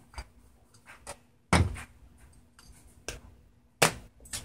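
Handling a glass slow-cooker lid while its knob handle is unscrewed and set down: a few light clicks, a heavier knock about a second and a half in, and a sharp click near the end.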